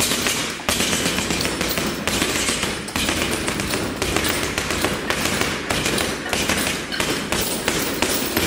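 Boxing gloves striking a heavy punchbag in a rapid, continuous flurry of punches.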